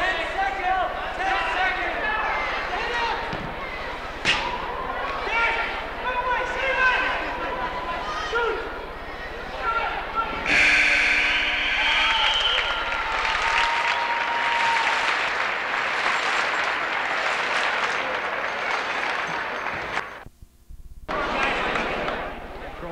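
Indoor arena crowd noise with scattered voices, then about halfway a loud, steady arena horn blast for a goal, followed by several seconds of crowd cheering. The sound drops out briefly near the end.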